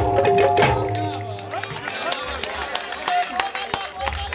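Live Punjabi Sufi folk song with percussion ending: held instrumental tones and drum hits fade out over the first second or so. Mixed crowd voices and scattered sharp hits follow.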